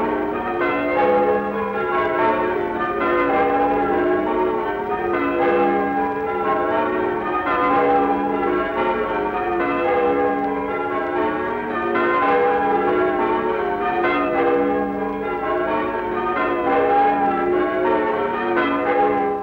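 Church bells change ringing: a set of tower bells struck one after another in steady repeating rounds, each note ringing on into the next.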